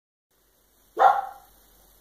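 A pug's single short bark about a second in, begging for a treat.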